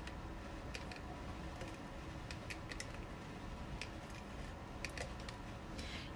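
Stamp & Seal adhesive tape runner being rolled and pressed onto cardstock, giving a dozen or so faint, irregular clicks and ticks.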